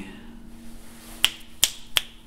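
Fingers snapping three times in quick succession, sharp clicks about a third of a second apart, over a faint steady hum.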